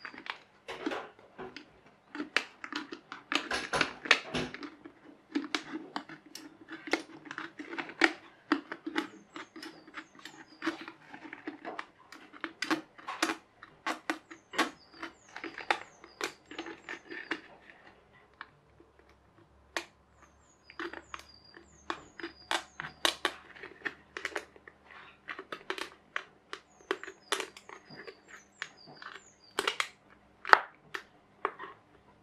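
Utility knife blade scoring and scratching round a thin plastic drink bottle, a rapid uneven run of short scrapes and clicks as the cut is worked a bit at a time to take the bottom off. The scraping stops for a couple of seconds about two-thirds of the way through, then carries on.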